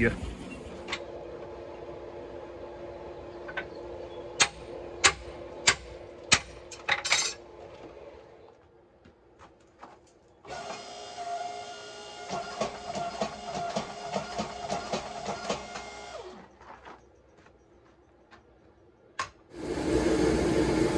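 Sharp hammer blows on steel, about five strikes roughly half a second apart, over a steady machine hum, as a drift is driven into a hot H13 billet. Later a power hammer works the hot steel in a fast, even run of blows for about six seconds.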